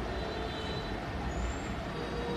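Steady low background rumble and hiss, with no distinct events.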